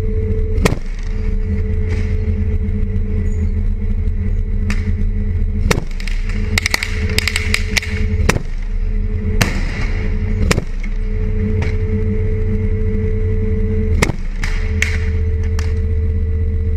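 Engine of an armoured vehicle running in a loud, steady drone with a low rumble, while sharp cracks of gunfire ring out at intervals, including a quick burst of shots about six to seven seconds in.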